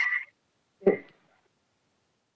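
A woman's speech over a video call trails off, then a single short clipped voice sound comes about a second in, and the line goes dead silent.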